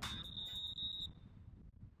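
Referee's whistle blown once, a steady shrill tone lasting about a second, signalling half time in a football match.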